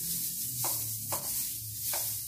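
Long-handled floor brush scrubbing a wet tiled floor: a steady high swishing with three sharper strokes.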